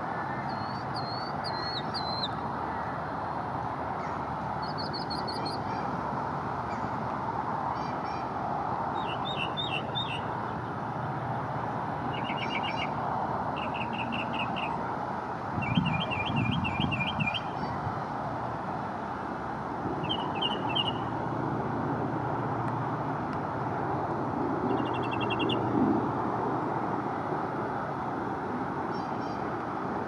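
Northern mockingbird singing: short phrases of rapidly repeated high notes, each phrase a different type and separated by brief pauses, mimicking the calls of other birds. A steady low background roar runs underneath, with a short low bump about halfway through.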